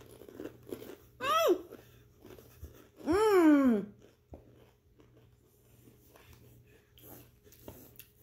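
Crunching and chewing of Doritos tortilla chips. Two wordless voiced exclamations come through it: a short one about a second in, and a longer one about three seconds in that falls in pitch and is the loudest sound.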